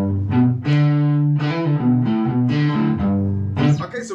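Freshly built and strung cigar box guitar, plugged in by cable, played as a short riff of plucked and strummed notes and chords that ring out, changing pitch about eight times.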